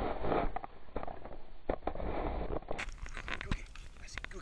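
Dogs seizing and tugging at a wooden stick held in a hand: scattered cracks and knocks of the stick with scuffling, over a low rumble on the microphone. It sounds dull at first and clearer for the last second or so.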